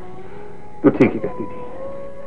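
A short cry, falling in pitch, about a second in, over a steady held tone in the film's soundtrack.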